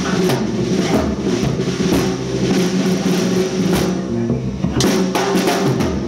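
Live jam band playing: electric violin and electric guitar over bass and a drum kit keeping a steady beat.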